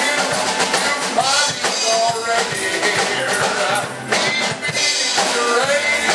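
Church music: a man singing into a microphone over instrumental accompaniment with drums.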